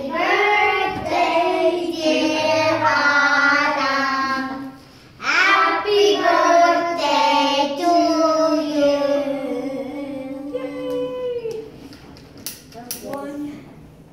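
A group of children singing a song together in two long phrases with a short break about five seconds in, the singing trailing off near the end, followed by a few sharp clicks.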